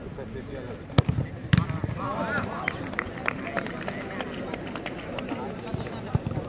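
A penalty kick: a sharp thump as a football is struck hard about a second in, then a heavier thud about half a second later as the ball hits something. Spectators' voices rise right after, over steady background chatter.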